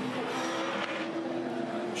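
A V8 Supercars race car's 5-litre V8 engine running hard on track, holding a fairly steady note.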